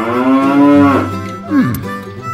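A long animal call, rising then falling in pitch and lasting about a second, over background music, with a short falling glide near the end.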